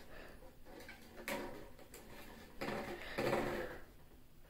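Faint scattered rustles and light knocks from ferrets moving about among toys on a wooden floor, a little louder about a second in and again near the end.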